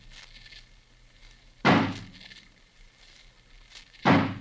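Radio-drama sound effect of an axe striking a barred wooden door: one heavy blow a little under two seconds in, and the next blow landing right at the end.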